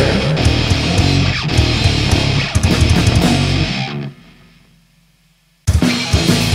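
Grindcore/crust band playing distorted electric guitar, bass and drums at full level; about four seconds in the music stops and fades away to near silence, and after a gap of about a second and a half the next section crashes in suddenly at full level, most likely one song ending and the next beginning.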